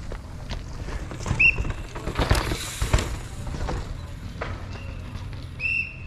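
Footsteps crunching and scuffing on dry dirt and loose rock on a steep trail, with a burst of heavier scrapes and knocks about two to three seconds in. Two short, high chirps are also heard, one early on and one near the end.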